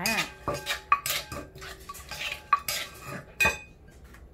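A metal spoon clinking and scraping against a metal mixing bowl as a pounded salad is stirred and tossed, with several sharper knocks that leave the bowl briefly ringing.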